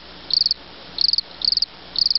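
Cricket chirping: short high-pitched chirps, each a quick trill of a few pulses, repeating about every half second to second, three or four times.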